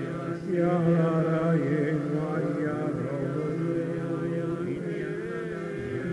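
A congregation of many voices singing a slow, chant-like song together, the pitches sliding gently and overlapping.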